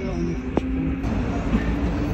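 Steady rumble of a passenger train running, heard from inside the carriage, with a low hum and one sharp click about half a second in.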